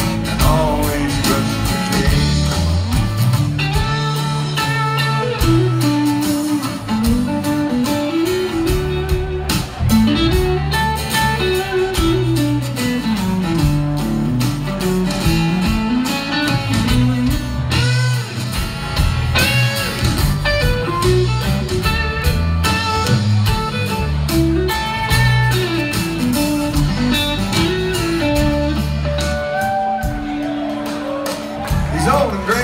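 Live band playing an instrumental break: a guitar lead over strummed acoustic guitar, a bass line that climbs and falls, and drums, in a bluesy country-rock style.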